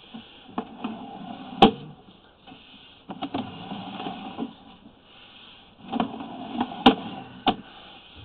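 Scattered clicks and knocks of a sewer inspection camera rig being worked, the push cable fed and handled, with two sharp clicks, one about a second and a half in and one near the seven-second mark, over a faint steady hiss.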